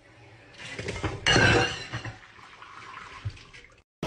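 Water from a kitchen faucet running into a metal sink. It builds up, gushes loudly for a moment about a second in, then runs on more quietly.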